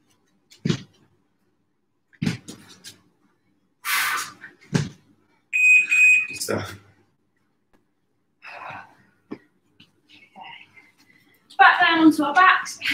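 Dull thumps of people squatting on gym mats, a second or two apart, and a short, high, steady electronic beep about halfway through.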